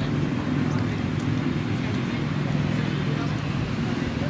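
Indistinct outdoor chatter of players' voices over a steady low rumble.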